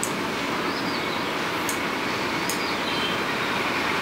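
Steady outdoor background noise, an even hiss with a couple of faint clicks in the middle.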